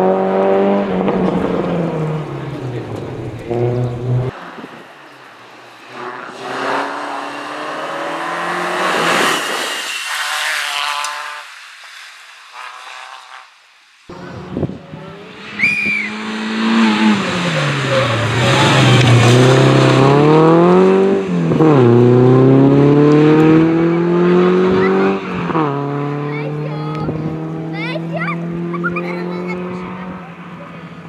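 Renault Clio Sport rally car's engine at full throttle on a stage, its pitch rising through each gear and dropping sharply on gear changes and braking. The loudest stretch comes about halfway through, as the car brakes into a bend and accelerates out of it, with a brief tyre squeal.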